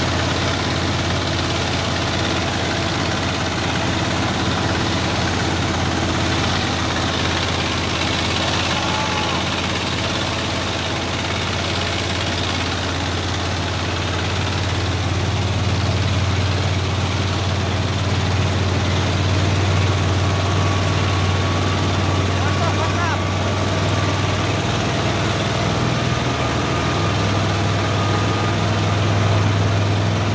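Heavy diesel truck engine running steadily close by, a deep continuous drone that grows louder in the second half.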